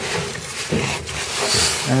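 A gloved hand rubbing and scraping inside a dryer's blower housing, around the blower wheel, clearing out the debris that had jammed it. The rustling is uneven, with a brighter rustle about one and a half seconds in.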